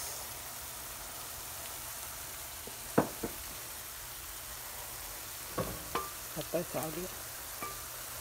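Steady hiss of potatoes frying in oil. A couple of sharp knocks about three seconds in and a few more around six seconds, from the wooden spoon stirring in the pan.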